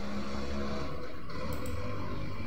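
A steady low rumble with a faint hiss above it and no clear events.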